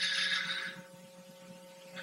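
A short breath at the lectern microphone, a soft hiss that fades out within the first second. Under it runs the faint, steady hum of an old videotape recording, with a few constant tones.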